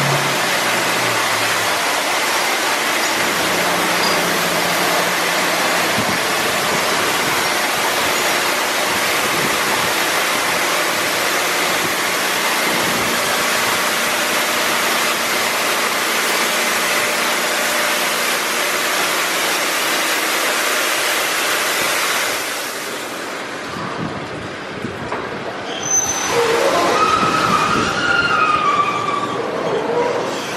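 Automatic car wash gantry spraying the car: a steady loud hiss of water spray for about twenty seconds, which then stops. Near the end the wash's spinning cloth brush starts up and swishes against the car.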